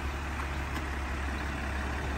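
A steady low rumble with light background noise, with no distinct events.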